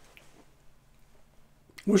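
A pause in a man's talk: faint room tone with a low hum. His voice starts again near the end.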